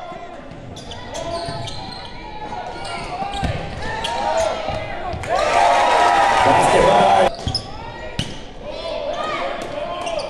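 Basketball game sounds on a hardwood gym court: a ball dribbled, sneakers squeaking, and voices from players and spectators, echoing in a large gym. A louder stretch of about two seconds in the middle cuts off suddenly.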